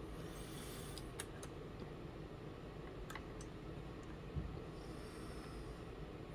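Low room hiss with a few faint clicks of a small brass tube being handled against a wooden model boat hull: a cluster about a second in, two more around three seconds, and a soft low knock just after four seconds.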